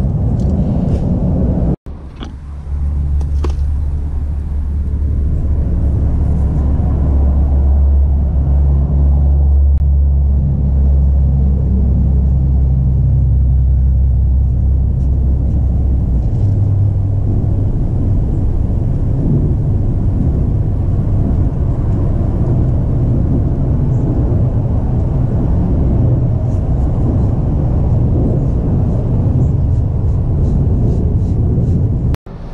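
A loud, steady low rumble with a deep hum, broken by a brief dropout about two seconds in; the hum shifts a little higher about halfway through.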